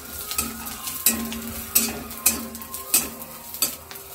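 Steel spatula stirring nuts being lightly fried in oil in a steel kadai: a faint sizzle, with a sharp scrape or knock of metal on the pan about every half second to second.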